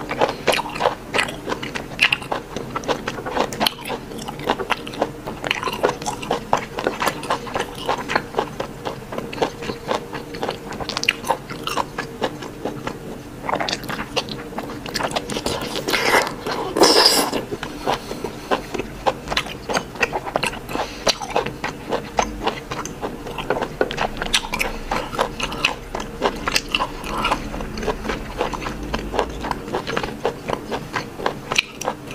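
Close-miked chewing and biting of raw Arctic surf clam: a steady run of short mouth clicks and smacks, with a louder bite about sixteen seconds in.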